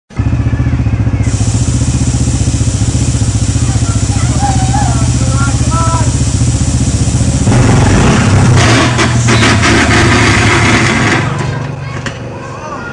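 Small engine of a four-wheeler (ATV) running with a fast, even beat, then louder and rougher for a few seconds before easing off near the end.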